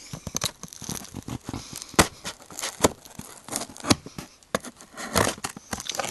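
Scissors cutting packing tape and cardboard on a shipping box, with irregular crackling, tearing and snapping and a sharper snap about two seconds in.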